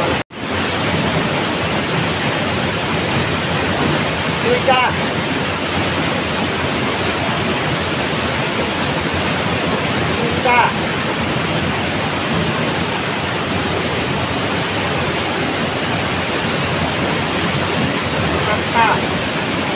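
Steady rush of a mountain stream's flowing water, with a short rising chirp about five seconds in and another around ten seconds in.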